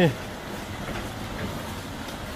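Steady city street traffic noise, with a box truck driving off along the road.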